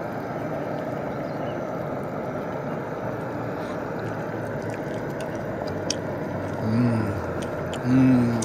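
Steady rushing roar of a lit gas camp stove burner heating a pot of simmering soup. A short hummed voice sound comes near the end.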